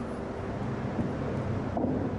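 Steady low rumble with wind noise on the microphone, no distinct knocks.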